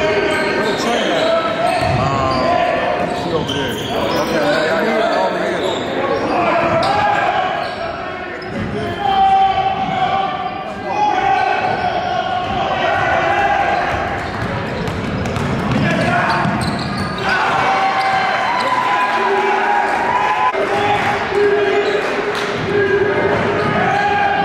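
Live sound of a basketball game in a gym: the ball bouncing on the hardwood court, with squeaks and the voices of players and crowd in a large hall.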